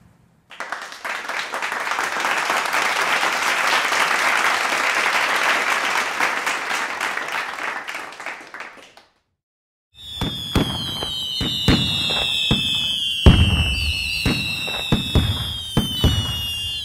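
Fireworks: several seconds of dense crackling, a brief silence, then whistling rockets whose whistles fall in pitch, mixed with sharp bangs.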